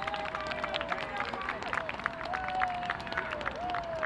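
Men's voices calling out across an open football pitch in several long, drawn-out shouts, with scattered short sharp taps.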